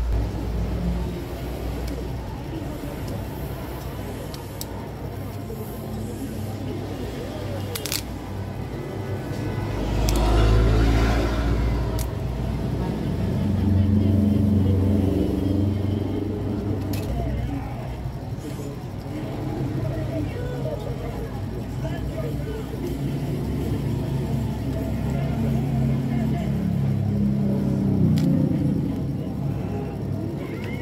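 Background road traffic with indistinct voices: a steady low rumble that swells as a vehicle passes about ten seconds in. A few light clicks of phone parts being handled come through.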